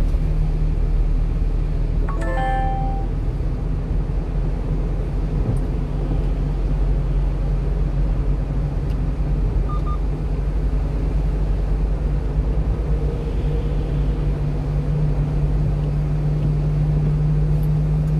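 Steady engine and road noise heard from inside the cab of a 1-ton refrigerated box truck driving along. A short electronic chime sounds about two seconds in.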